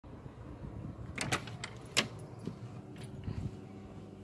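Key turning in a front door lock and the latch and lever handle clicking as the door is opened, with keys jangling on their lanyard. It is a run of sharp clicks, the loudest about two seconds in, ending in a soft low thud.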